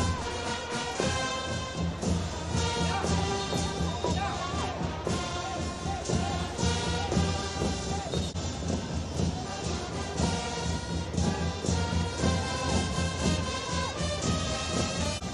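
Football stadium crowd's music: supporters drumming steadily with chanting voices, heard continuously through the TV broadcast.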